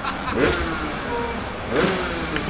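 Dirt bike engine revving faintly, its pitch gliding, with short bursts of voices about half a second in and near the end.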